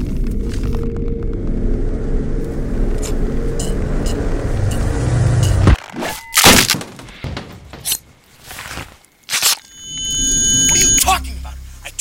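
A steady low rumble, like a car cabin on the move, that cuts off abruptly about six seconds in. A few loud, sudden hits follow.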